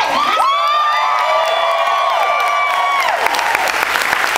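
Audience cheering and whooping, with several long, high shouts held together for about three seconds, then clapping taking over near the end.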